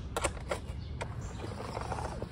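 A few light, sharp clicks and knocks from handling a hard motorcycle tour pack, most of them in the first second.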